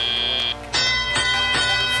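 A steady high electronic tone cuts off about half a second in, and a bright bell-like chime rings out: the FRC field's signal that the driver-controlled period has begun.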